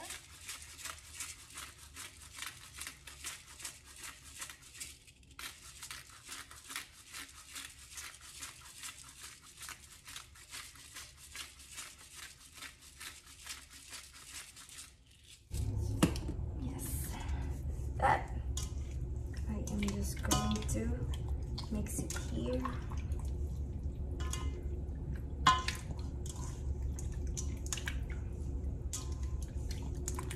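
Hand-held pepper mill grinding over a bowl in a long rasping run of fine clicks, with a short pause about five seconds in, for about fifteen seconds. Then a steady low hum comes in suddenly, with wet squishing and scattered clicks as raw chicken pieces are mixed by hand in a steel bowl of soy sauce marinade.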